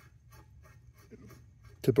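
Faint scraping and small ticks of a metal spud nut being turned by hand on its threads on a Trane direct return trap.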